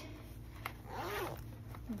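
Zipper on the front pocket of a sewn fabric bag being pulled shut, one rasping run of about a second.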